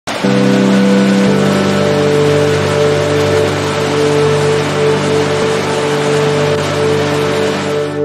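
Sustained synth chords over a steady loud rush of falling water, which cuts off suddenly at the end.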